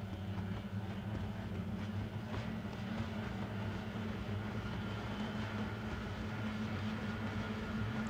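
Racing hydroplanes' two-stroke outboard engines running at a steady, moderate drone as the boats cruise past after the finish, with little change in pitch.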